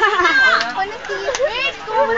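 Several young voices talking and calling out over one another, high-pitched and overlapping, with no single clear speaker.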